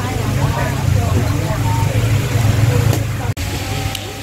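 Steady low rumble of road traffic under indistinct chatter of people talking, with a brief sudden gap about three seconds in.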